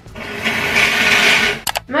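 A forceful nose blow of about a second and a half, expelling saline rinse water from the nose, followed by a couple of short clicks.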